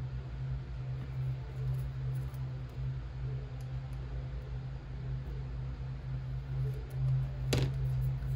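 A lawnmower engine running steadily outside, heard indoors as a constant low drone. A sharp click sounds near the end.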